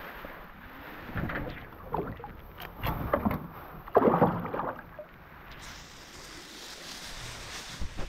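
A few knocks and rustles, then a trout cod splashing into the water about four seconds in as it is released over the side of the boat. A steady hiss follows.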